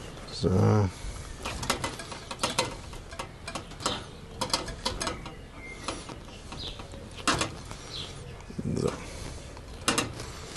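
Hands tying butcher's twine around a raw, marinated joint of veal on a wire rack over a metal pan: a run of irregular small clicks and rustles.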